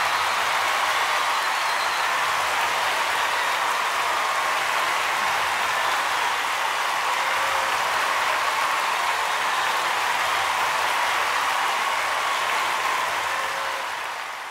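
Audience applauding steadily after an award winner is announced; it eases off near the end.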